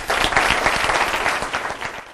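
Audience applauding, a dense steady clapping that fades near the end and cuts off suddenly.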